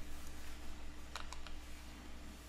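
A few sharp clicks on a computer's mouse and keys: one just after the start, then a quick cluster of three or four about a second in. They sit over a low steady hum.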